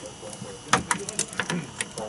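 A scattered run of light clicks and taps, a few close together about a third of the way in and more spread out after, with a brief word of speech near the end.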